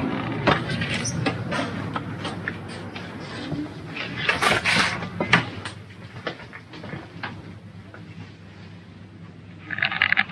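A glass shop door pushed open and swinging shut, with scattered clicks and knocks of handling and steps. The street noise drops away about halfway through, once inside.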